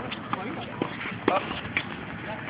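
Tennis balls bouncing on a hard court and being hit with rackets: about five sharp, irregular knocks.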